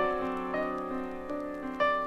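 Piano-led instrumental music: a gentle keyboard passage with chords and a moving line, new notes struck several times a second, and no singing.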